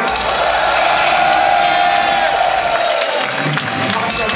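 Live metal band hitting a short burst between songs: a rapid, even drum roll with deep low end and a held, slightly bending guitar note, stopping about three seconds in, over a cheering crowd.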